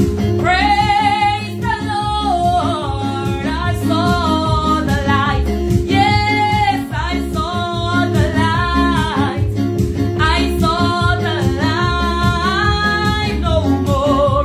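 A woman singing a Pentecostal gospel song in full voice, phrase after phrase with some held notes, over steady sustained chords from an electronic keyboard.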